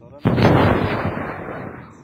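A single heavy weapon shot: a sudden loud blast about a quarter second in that rumbles away over the next second and a half.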